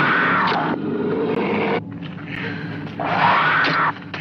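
Old film soundtrack of a monster-movie dinosaur roaring: two long rising-and-falling cries, one at the start and one about three seconds in, over the film's music and effects.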